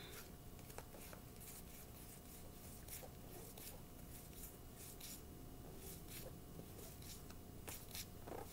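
Faint shuffling of a tarot deck by hand, cards sliding off the pack in irregular light flicks.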